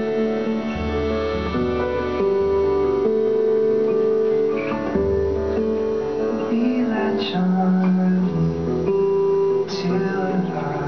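Acoustic guitar played live with an electric keyboard behind it: an instrumental passage of held notes and chords, with no words sung.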